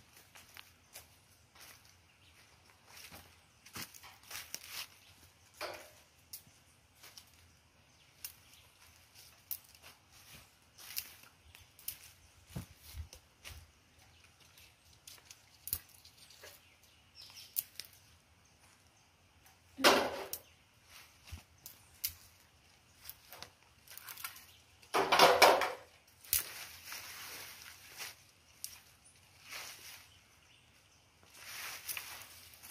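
Dry leaf litter and twigs crackling and rustling in scattered short bursts as people step and handle sticks on the ground, with two louder rustling scrapes about twenty and twenty-five seconds in.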